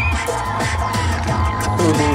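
Upbeat dance music with a steady beat, the soundtrack of a crowd flash mob dance.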